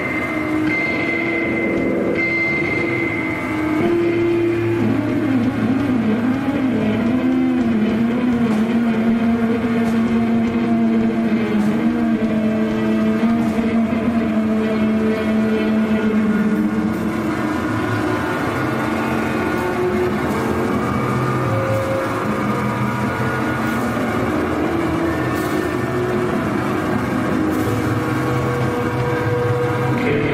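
A heavy band playing live: a loud, continuous drone of distorted guitar and electronic noise with held, wavering pitches and a high whine near the start, and almost no drum hits.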